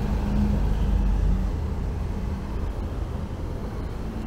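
Low rumble of road traffic beside the pavement, with a steady engine hum that fades out about a second and a half in.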